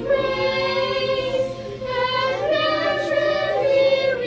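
A group of children singing together with a woman's voice among them, in long, smoothly held notes.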